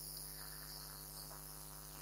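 Faint steady electrical hum with a high hiss from the microphone and sound system.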